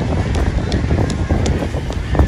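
Wind buffeting the microphone, heard as a loud, uneven low rumble.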